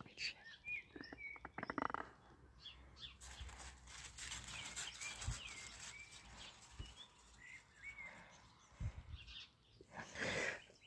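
Faint birds chirping in short scattered notes, over a light haze of outdoor background noise, with a few soft low thumps.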